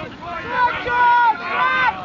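Voices shouting outdoors: several long, raised calls that rise and fall in pitch and overlap, loudest in the second half, the kind of encouragement shouted from the touchline and across the pitch during open play.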